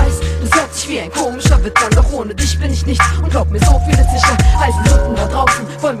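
German-language hip-hop song: a beat of regular kick-drum hits over a deep sustained bass and held notes, with rapped vocals over it.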